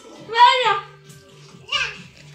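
A young child's voice: two short, high-pitched wordless exclamations, the first about half a second in and the louder, the second briefer near the end.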